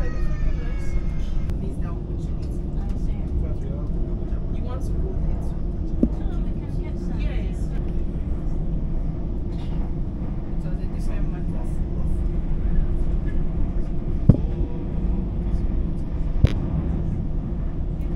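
Steady low rumble of a high-speed train in motion, heard from inside the carriage, with a few sharp clicks near the middle and towards the end.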